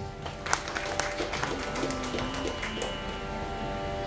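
Scattered, irregular hand claps of audience applause, starting about half a second in, over a steady drone from an electronic tanpura.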